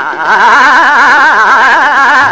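A male Hindustani classical vocalist holding a sung note with a fast, even shake in pitch, about five or six wavers a second, breaking off briefly just after the start and then carrying on.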